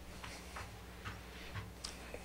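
A few faint, short ticks at uneven intervals over a steady low room hum.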